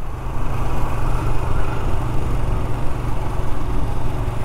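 Royal Enfield Scram 411's single-cylinder engine running steadily while the motorcycle cruises, with no change in revs. It runs smoothly, without pinging.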